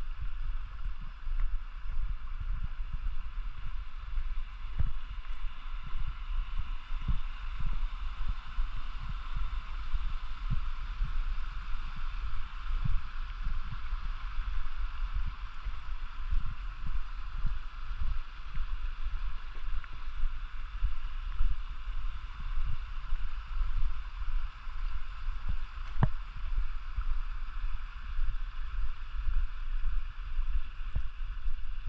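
A mountain stream flowing steadily, with footsteps on a stony path and a low wind rumble on the microphone.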